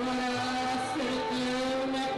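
Live mariachi music: one long held note that dips and returns about halfway through, over low bass notes.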